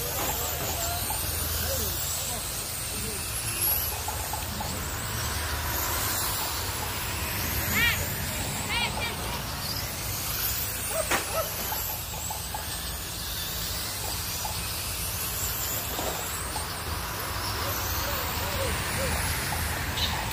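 Radio-controlled dirt oval late model cars racing laps, their motors giving a high whine that rises and falls in pitch as the cars pass, over a steady low hum.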